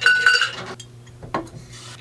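Ice being scooped and clattering against a metal cocktail shaker tin, with a short metallic ring in the first half second. A single sharp click follows about a second later.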